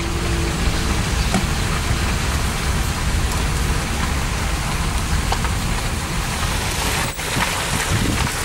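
Steady rushing noise of wind on the microphone and street traffic, picked up from a car with its window open. The low rumble is heavy and uneven.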